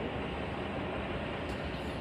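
A long freight train's cars rolling past, a steady even noise with no horn or sudden sounds.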